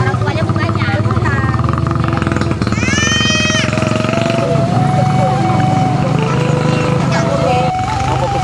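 Voices in the background over a steady low hum, with a slow line of held notes stepping up and down in pitch from about halfway, and a short high call about three seconds in.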